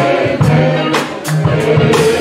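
Gospel music: voices singing over a band with sustained bass notes and a steady percussive beat.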